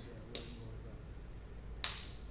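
Two sharp single clicks about a second and a half apart, the second louder, over a low steady room hum.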